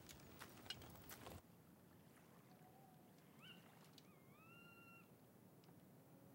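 Near silence. For about a second and a half there are faint clicks and light jingles of soldiers' kit and horse harness; these cut off suddenly, leaving quiet outdoor ambience. In the middle come two faint whistled calls, each rising and then holding steady.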